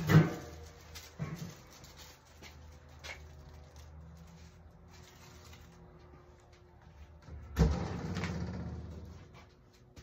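Knocks and small clicks near the start, then one loud knock about seven and a half seconds in followed by a second and a half of rumbling noise that fades away.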